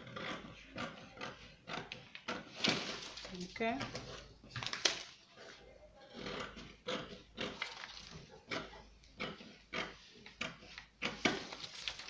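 Scissors cutting through a paper sewing pattern: a steady run of irregular snips with paper rustling as the sheet is turned.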